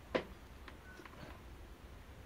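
A single sharp click about a fraction of a second in, followed by a few faint ticks, as multimeter test probes are handled and brought onto a small LED star board.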